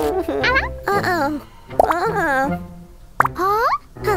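Children's cartoon soundtrack: light music with a steady bass line under short, wordless vocal sounds from the characters that glide up and down in pitch. There is a sharp pop about three seconds in.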